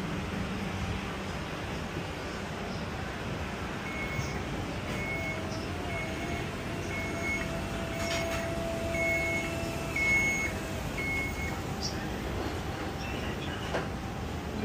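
Scissor lift's warning beeper sounding a high electronic beep that repeats a little faster than once a second, starting about four seconds in and stopping a few seconds before the end, over steady background street noise.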